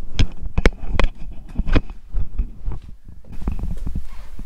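A quick run of sharp clicks and knocks, thickest in the first two seconds, then softer rubbing: the camera being handled and carried up to a hanging dial luggage scale.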